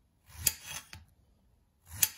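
Serrated kitchen knife slicing rounds off a cucumber on a ceramic plate: a short rasping cut about half a second in with a sharp click, and a second cut starting near the end.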